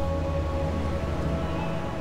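Background music: a steady held chord over deep low notes.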